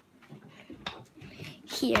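Faint handling noise with a few light clicks, then a girl says "red" near the end.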